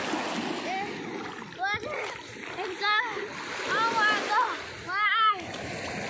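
Shallow seawater splashing and small waves breaking at the shore as a child wades and paddles about. A child's high voice calls out briefly several times over the water noise.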